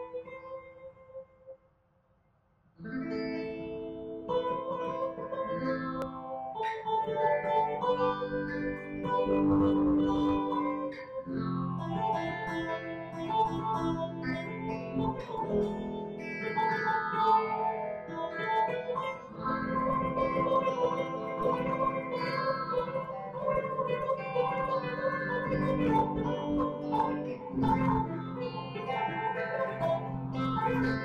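Two electric guitars playing a duet, one a Telecaster-style guitar, picked melody over chords. After a lingering note and a brief pause, the playing starts about three seconds in and runs on without a break.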